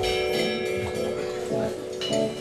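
Jazz quartet playing live: electric guitar, keyboards, electric bass and drums. A drum-and-cymbal accent lands right at the start, with bell-like chord tones ringing on.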